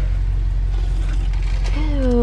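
Car engine idling, heard inside the cabin as a steady low hum.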